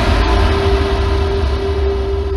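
Loud, deep, steady rumbling drone with a single held tone above it: trailer sound design.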